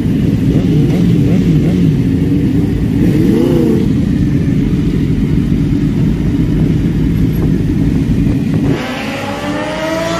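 Several sport motorcycle engines idling together in a queue, one briefly blipped up and back down about three seconds in. Near the end the sound drops, and a motorcycle on the track accelerates with a rising pitch.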